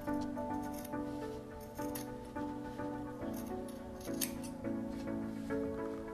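Background music with a gentle melody, over which tailor's shears snip a few times, cutting through fabric as the seam allowance of a welt is trimmed down to 3 to 4 mm.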